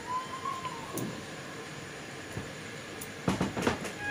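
Steady low hiss of jujubes cooking in melting jaggery in a steel kadai, then, a little after three seconds in, a quick cluster of knocks and scrapes as a wooden spatula goes into the pan.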